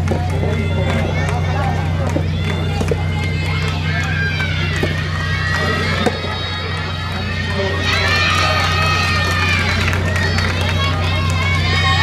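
High-pitched voices shouting and calling out across the tennis courts, growing louder and fuller about two thirds of the way in, over a steady low hum.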